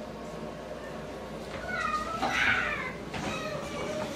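A cat meowing once: a single drawn-out call about two seconds in, lasting about a second.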